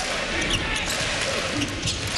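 Steady arena crowd noise during a basketball game, with a basketball being dribbled on the hardwood court.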